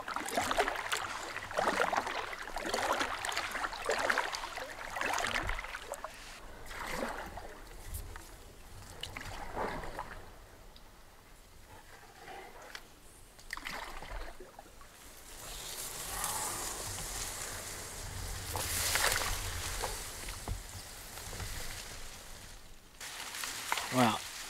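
Kayak paddle strokes: irregular splashes with water dripping off the blade as the boat is worked slowly into a weedy cove, the hull brushing through reeds and grass in the second half.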